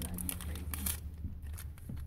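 Paper wrapper of a stick of gum crinkling and tearing as it is unwrapped, in a run of small crackles mostly in the first second, over a low steady hum inside a car.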